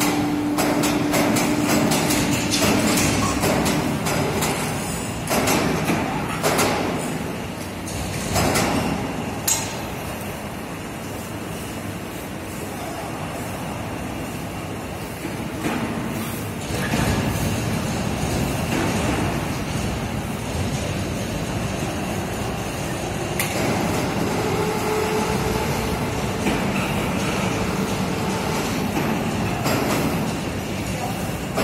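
Loud, steady rumble and clatter of heavy steel machinery: steel pole molds on the roller wheels of a centrifugal concrete pole spinning machine, with repeated knocks and clanks in the first ten seconds. Later an overhead crane runs with a steel pole mold hanging from its chains.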